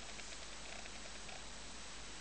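Faint steady hiss of room tone, with no distinct strokes or knocks.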